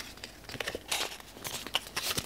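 Cardboard and paper packaging of a smartphone box being handled: light, irregular rustling and crinkling, with a few short scrapes.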